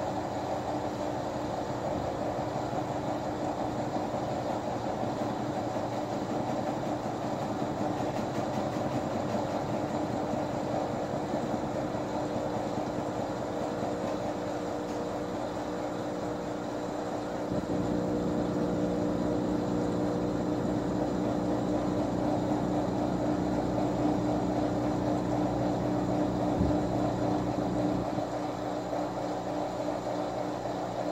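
Top-loading washing machine's drum and agitator spinning, a steady whir with a hum that grows a little louder about halfway through.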